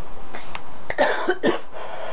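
A woman coughing: a short cough burst about a second in, after a faint click.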